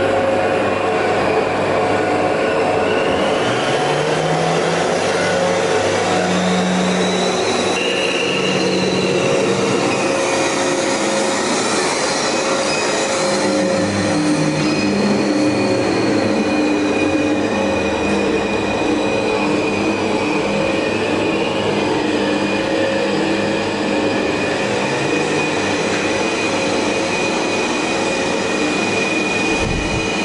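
Sound-art installation soundscape played over speakers: a loud, unbroken dense noise with slowly gliding tones over it, joined about halfway by a steady high whistle.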